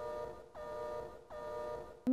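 A short electronic sound effect of three similar held, buzzy notes, each starting with a quick downward slide in pitch.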